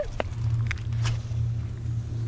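Footsteps in sandals over creek-bank rocks, with a few light clicks in the first second, over a steady low hum.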